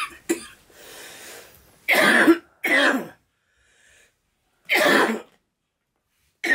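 A man coughing: two short coughs at the start, a breathy wheeze, then three loud, harsh coughs about two, three and five seconds in. It is a smoker's coughing fit after drawing on a blunt.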